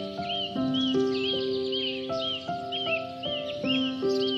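Slow, gentle melodic music of held notes, over a bird's short arched chirps repeated about two to three times a second.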